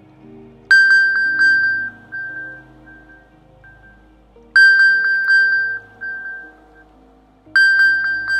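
An iPhone 4S playing the Find My iPhone alert sound, set off remotely by iCloud's Play Sound command to help locate a lost phone. A quick run of high pings fades out and repeats about every four seconds, three times.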